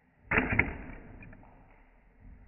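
A metal fingerboard grind rail knocked and set against a tabletop: a sudden clatter with two sharp knocks about a quarter second apart, dying away within about a second.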